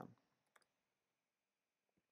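Near silence, with a single faint keystroke click on a computer keyboard about half a second in and another fainter click near the end.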